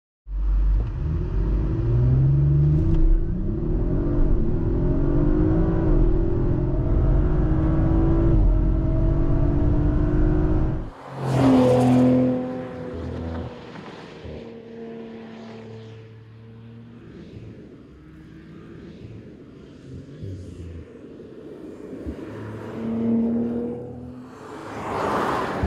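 Audi RS 4 Avant's 2.9-litre twin-turbo V6, through its RS sports exhaust, accelerating hard, its pitch climbing again and again as it pulls through the gears. About eleven seconds in the sound cuts off abruptly, then comes a brief loud pass. After that the engine is heard quieter and steadier, rising again near the end.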